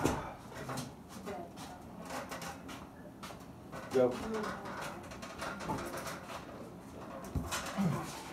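Mostly quiet room sound with low voices, then a single spoken call of "Go" about four seconds in, the loudest moment, which starts an arm-wrestling pull. A short falling voice sound comes near the end.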